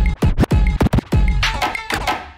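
Records scratched by hand on a DJ turntable over a hip-hop-style beat of deep kick drums that fall in pitch. A quick run of short scratch cuts comes in the middle.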